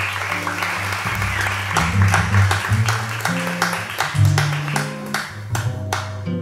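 Live jazz: double bass walking through a line of notes with electric archtop guitar, under audience applause that fades out near the end.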